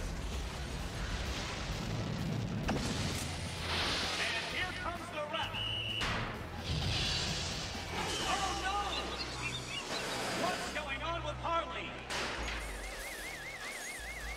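Animated cartoon soundtrack: background music and sound effects, with whooshes and crashes as robots smash together. Near the end a fast, regular warbling siren tone begins, about five warbles a second.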